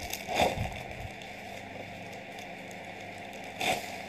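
Two brief noisy handling sounds over a low steady room hum: one about half a second in, the other just before the end.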